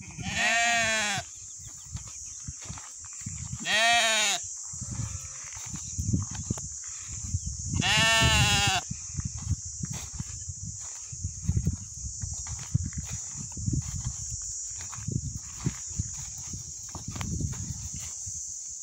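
Young Hissar ewe lambs bleating: three loud calls, one right at the start, one about four seconds in and one about eight seconds in, each rising then falling in pitch. A steady high-pitched hiss runs beneath.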